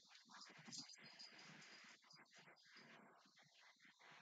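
Near silence: faint room tone with small indistinct noises.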